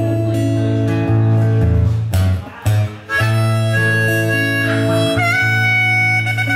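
Blues harmonica solo played from a neck rack over strummed acoustic guitar: long held notes that change pitch every second or so, with two short breaks about two and a half and three seconds in.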